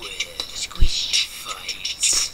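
Human beatboxing: repeated short hissing hi-hat sounds and small mouth blips, with one deep kick-drum thump just under a second in.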